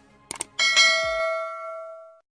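A short click, then a bell-like ding that rings on and fades over about a second and a half: the sound effect of a subscribe-button and notification-bell animation.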